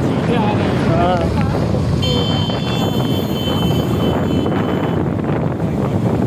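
Wind buffeting the microphone, with heavy rain and road noise, while moving across a bridge in a downpour. A steady high-pitched whine sounds from about two seconds in until about five seconds in.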